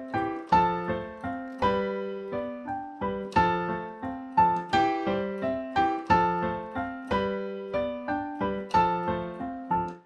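Digital stage piano playing a cha-cha-chá tumbao (piano montuno) with both hands, harmonized with the next chord inversion in the right hand over the left hand, moving through C, F and G chords. Syncopated, repeated chord strikes that each ring briefly, sounding full-bodied.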